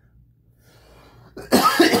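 A man coughs, a short loud cough about a second and a half in.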